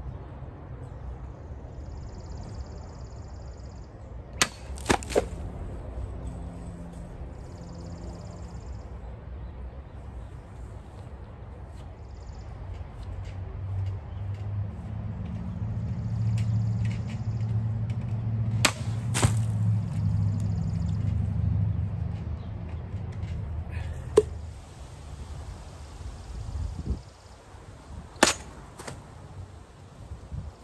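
Cold Steel 1796 light cavalry sabre cutting plastic soda bottles: sharp cracks of the steel blade striking the bottle, a few times several seconds apart, some as quick pairs. A low rumble swells and fades in the middle.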